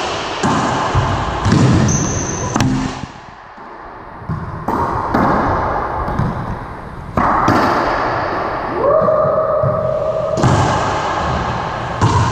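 A racquetball rally on an enclosed court: sharp racquet strikes and the ball smacking off walls and floor, each hit echoing. A brief high squeak comes about two seconds in, and a held tone lasts a second or so late on.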